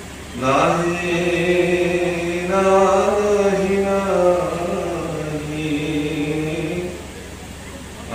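A man chanting a verse of a Bhagavata recitation in one long melodic phrase. His voice slides up at the start, holds long, slowly bending tones, and falls away about a second before the end.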